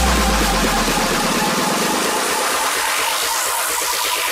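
Electro house dance music from a DJ mix. A deep bass note at the start dies away, then a whooshing sweep rises and falls in pitch near the end.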